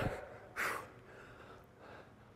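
A man's short, sharp breath about half a second in, from exertion while doing chin-ups, followed by faint breathing.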